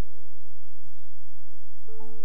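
Church keyboard holding one soft, sustained note during prayer, the pitch steady and the note struck again near the end, over a steady low hum.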